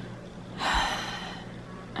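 A woman's single audible breath, a breathy rush of air about half a second in that lasts under a second.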